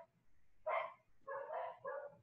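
Faint, short repeated calls of an animal, about four of them in two seconds.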